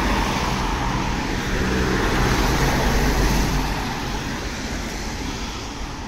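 Road traffic on a wet street: a steady hiss of tyres and engines that slowly fades toward the end.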